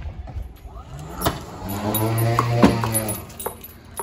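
Automatic dog-ball launcher's motor humming: it rises in pitch, holds steady for a little over a second and then stops, with two sharp clacks as a tennis-size ball is fired out.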